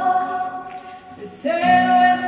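Church worship singing by many voices with the worship band: a long sustained sung note that fades away about a second in, then the voices come back in on a new held note about a second and a half in.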